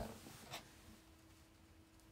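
Near silence: room tone with a faint steady hum and one brief soft click about half a second in.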